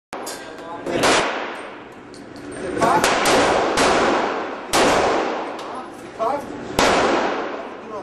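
Gunshots from other lanes of an indoor shooting range: several sharp shots a second or two apart, each with a long echo off the range walls, with voices between them.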